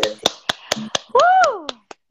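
One person clapping, about four claps a second, with a short cheering call that rises and falls in pitch in the middle.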